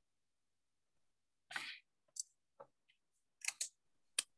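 A few faint computer keyboard keystrokes: about half a dozen separate clicks, starting about a second and a half in.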